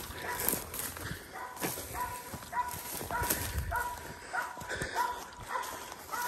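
Belgian Malinois barking over and over while baying a hog, about two short barks a second, with brush rustling.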